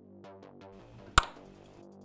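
A steel M2 screw tap snapping inside the post of a diecast metal car body: one sharp click just past a second in, over soft background music. It is a sign of the tap binding in the metal, perhaps because the post was not lubricated enough.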